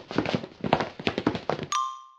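Cartoon sound effects: a quick, irregular run of light taps, about six to eight a second, then a short bright ding near the end.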